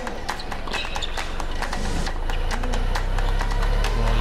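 Tennis rally on a hard court: sharp racket strikes on the ball among quick footsteps, over a low crowd murmur that grows louder toward the end.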